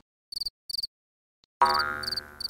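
Night-time ambience: crickets chirping in short, high pulsed trills near the start. After a brief silent gap, a frog's drawn-out croak begins about a second and a half in.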